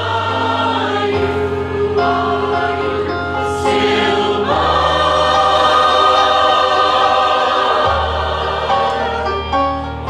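Mixed choir of women and men singing, moving into a long held chord about halfway through that swells and is cut off shortly before the end.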